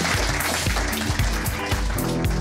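Audience applause over the opening of the closing music, which has steady bass notes and a beat; the music comes through more clearly near the end as the applause fades.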